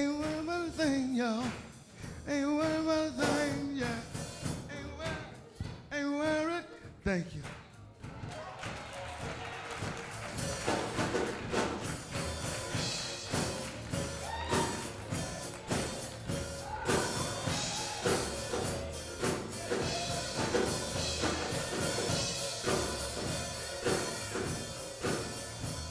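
A man singing a gospel song into a microphone in long, swooping held notes for the first several seconds, then church instrumental music with drums carrying on at a steady beat for the rest.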